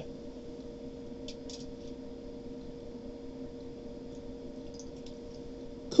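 Quiet room tone with a steady low hum, and a few faint clicks and rustles from die-cast toy cars being handled, about a second and a half in and again near the end.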